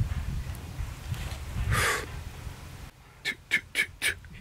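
Three or four sharp knocks in quick succession near the end, about a quarter second apart, heard as footsteps. They sit over an amplified, rumbling background with a short hiss about two seconds in.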